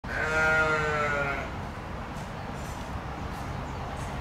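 A single drawn-out animal call with a clear pitch, falling slightly and lasting about a second and a half near the start, followed by a steady low background hum.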